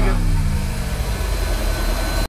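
Steady low rumble of outdoor background noise, with a man's voice trailing off at the very start.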